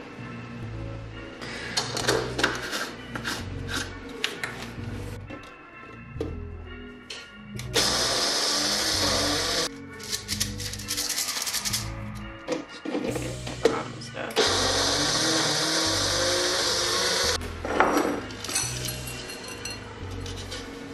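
Magic Bullet personal blender running in two short bursts, about two seconds and then about three seconds, grinding a cup of rolled-oat dog-treat mix. Background music with a steady beat plays throughout.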